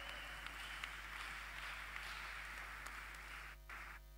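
Faint applause from a church congregation, a soft even patter that dies away near the end, over a steady low electrical hum from the sound system.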